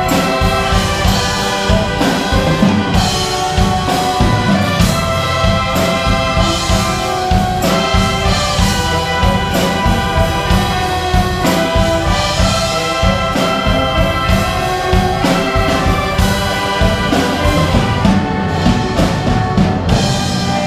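Concert wind band playing, brass to the fore, in full sustained chords at a steady loudness.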